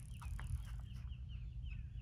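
A bird calling outdoors: a quick, even series of short, high chirps, about five a second, fairly faint.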